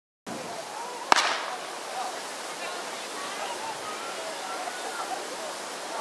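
A starter's pistol fires once about a second in, signalling the start of a 300 m hurdles race. It is followed by a steady wash of outdoor noise with faint distant voices and calls.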